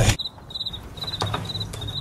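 Crickets chirping in short, high-pitched trills, about five in two seconds.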